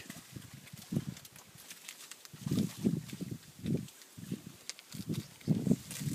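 German shorthaired pointer paddling and wading through shallow marsh water, a run of irregular soft, low splashes that come more often in the second half.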